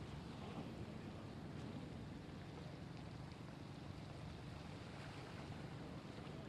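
Faint, steady outdoor noise of wind and flowing floodwater, a low even rumble with no distinct events.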